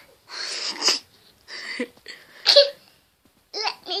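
A young child's breathy vocal noises close to the microphone: three short puffs of breath, the last with a brief voiced sound. A voice starts laughing or speaking near the end.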